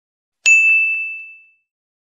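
A single bright ding, a notification-bell chime sound effect, struck about half a second in and ringing out as it fades over about a second.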